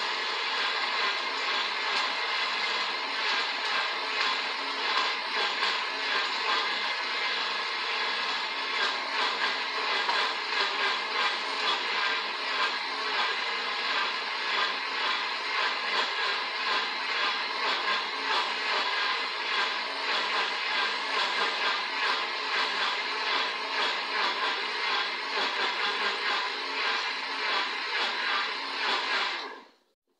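Countertop electric blender running steadily as it blends a liquid papaya-and-milk shake, then switched off just before the end, the motor stopping abruptly.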